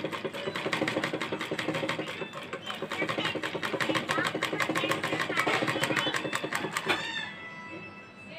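Domestic straight-stitch sewing machine stitching a seam, a rapid, even run of needle strokes that stops about seven seconds in.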